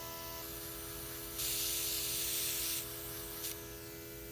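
Handheld airbrush stylus spraying eyeshadow: a hiss of air lasting about a second and a half, then a short puff near the end, over the steady hum of the airbrush compressor.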